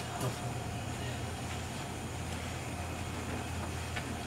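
Multi-ring gas burner running with a steady low rumble of flame. A brief light click comes just after the start.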